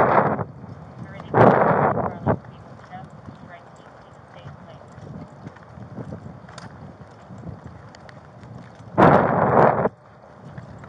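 Footsteps of a person walking on pavement, heard close on a body-worn camera, broken by two loud bursts of rushing noise, each about a second long, one shortly after the start and one near the end.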